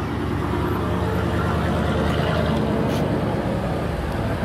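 A motor vehicle engine running steadily, a low even drone.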